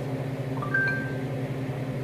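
A short two-note chime, a lower tone stepping up to a higher held one, about half a second in, over a steady low hum.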